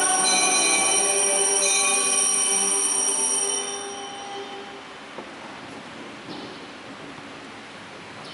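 Bells ringing: a cluster of sustained metallic tones struck more than once, dying away about four seconds in. Then there is only faint church room noise with a couple of soft knocks.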